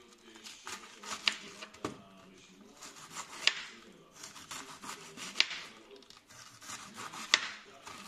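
Kitchen knife slicing a raw cabbage into thin shreds on a wooden cutting board: a crisp rasping through the leaves, with the blade knocking sharply on the board about every two seconds.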